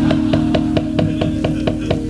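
Javanese gamelan accompaniment to a wayang kulit suluk: quick, even strokes on a struck instrument, about six a second, under a long held note.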